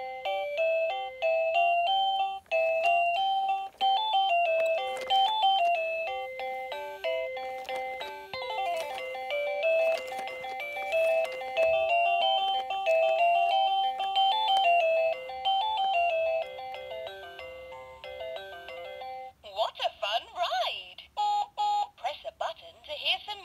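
VTech Rocking Animal Bus electronic toy playing a quick beeping melody through its small speaker. Near the end the tune stops and a warbling electronic sound takes over.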